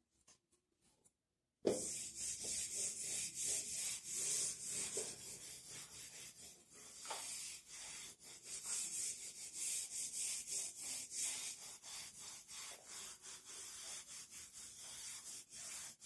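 Hand-held whiteboard eraser rubbed back and forth across a whiteboard, wiping off marker writing in quick repeated strokes. It starts abruptly about two seconds in.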